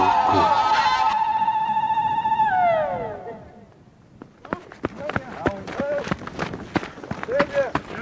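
Background music holding a long high note, which slides down and fades out about three seconds in. After a brief lull, men call out and cheer, with scattered sharp claps.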